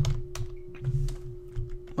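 A few scattered keystrokes on a computer keyboard, sharp separate clicks, over a faint steady hum.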